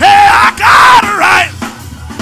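Loud gospel singing over a band with drums. The voice is loudest in the first second or so, then drops back.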